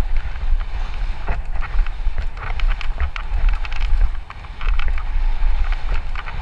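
Mountain bike, a Santa Cruz Nomad, rolling fast down a dirt trail: heavy wind rumble on the mounted camera's microphone, with tyres on loose dirt and a steady stream of quick clicks and rattles from the bike over bumps. The rumble drops briefly about four seconds in.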